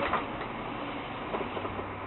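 Steady background noise with a faint low hum underneath.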